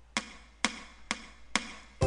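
A count-in of four sharp clicks, evenly spaced at about two a second, setting the tempo just before the song starts.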